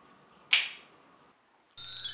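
A brief swish about half a second in. Near the end a bright, shimmering magic-sparkle chime effect starts, made of many high tones.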